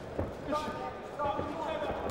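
Dull thuds from the boxers in the ring, a few short knocks in two seconds, with voices calling out over them.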